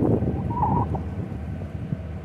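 Low, steady hum of an approaching diesel locomotive, with wind buffeting the microphone.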